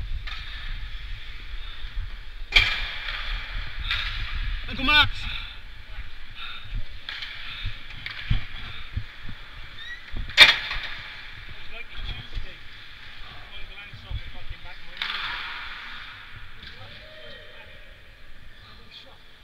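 Ice hockey skates scraping and gliding on rink ice, heard from a helmet-mounted camera over a low rumble, with two sharp knocks, one about two and a half seconds in and a louder one about ten seconds in.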